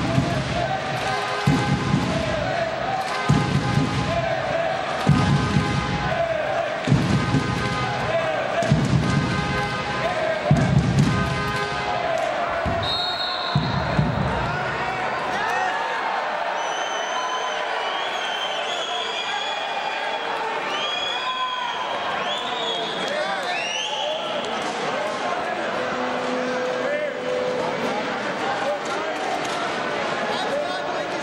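Crowd in a large sports hall, its voices and calls echoing, with a deep drum-like beat about every two seconds for the first half; after that the beat stops and the crowd noise carries on with higher shouts and whistles.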